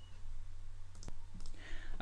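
A single computer mouse click about a second in, over a steady low hum.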